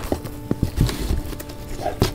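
Irregular knocks and rustles of a cardboard shipping box and its packing being handled and opened.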